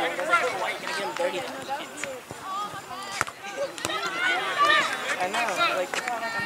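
Overlapping voices of players and spectators calling out across the field, none of the words clear, with a few sharp knocks in between.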